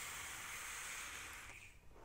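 A long drag drawn through a squonk vape mod's atomizer: a faint, steady airy hiss that fades out about one and a half seconds in.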